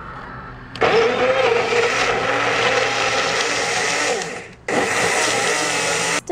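Small personal blender chopping banana, blueberries and strawberries into milk for a smoothie. The motor starts about a second in and runs for a few seconds with its pitch wavering under the load. It then dies away, and is switched on again for a second run near the end.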